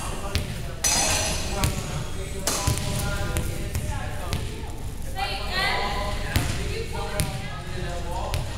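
Several voices chattering and echoing in a large gym, with scattered sharp thuds of a volleyball bouncing on the wooden court floor.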